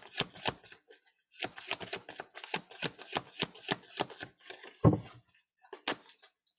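Tarot cards being shuffled by hand: a quick run of crisp card flicks, several a second, with a short pause about a second in and one louder thump near the end.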